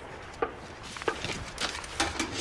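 A few light taps and clicks of small objects being handled on a counter, with two sharper clicks about half a second and a second in, over quiet room noise.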